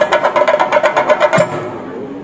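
Chenda drums beaten with sticks in a fast roll of strokes, about a dozen a second, that breaks off about a second and a half in.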